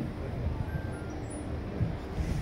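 Outdoor stadium background noise: a steady low rumble with a faint murmur of distant voices and a few faint brief high tones.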